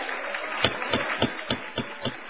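Scattered hand clapping over a hiss of room noise, with a run of louder single claps about three or four a second from about half a second in.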